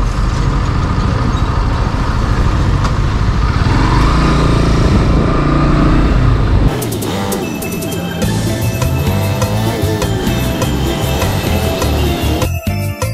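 Motorcycle riding noise, a dense rumble of engine and wind on the microphone. About seven seconds in it cuts off suddenly and background music with a steady beat takes over.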